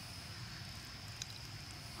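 Quiet outdoor woodland ambience: a faint low background rumble with a thin steady high-pitched tone and a soft tick or two about a second in.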